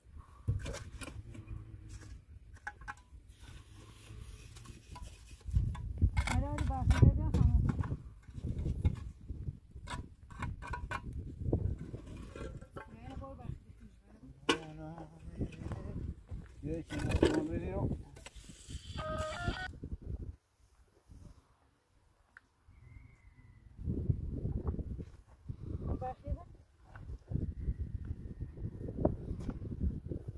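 Hand mortar work on a concrete-block wall: a shovel scraping and scooping mortar, with irregular clicks and knocks of tools and blocks. Voices come in at times, loudest about six seconds in and again past the middle.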